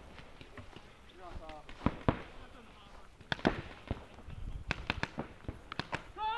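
A handful of sharp single pops at irregular intervals: paintball markers firing across the field, with faint distant voices between them.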